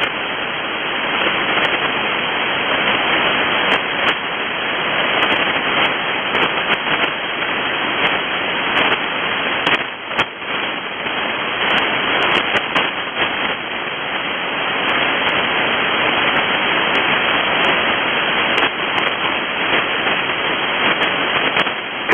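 Steady hiss of HF static from a Winradio Excalibur Pro receiver tuned to the 6577 kHz aeronautical channel, an open channel between voice transmissions. The hiss is clipped to a narrow voice band and dips briefly about ten seconds in.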